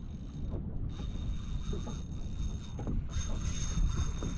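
Tsunami SaltX 4000 spinning reel working under load from a hooked tarpon, with wind rumble on the microphone.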